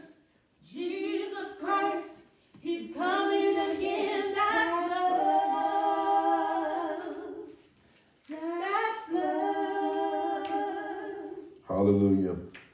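A woman singing a slow worship song unaccompanied, in three long-held phrases with short breaths between them, the middle phrase the longest.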